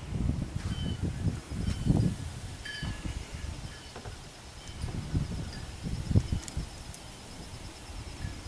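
Outdoor ambience with low, uneven rumbling and a few faint, short bird chirps.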